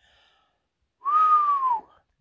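A man whistles one short note, rising slightly and then sliding down, with breath noise beneath it: an appreciative whistle about the meal.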